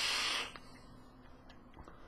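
A short hiss of air drawn through a sub-ohm dripper (0.6-ohm coil) as a vape hit is taken, fading out about half a second in. A faint background with a few small clicks follows.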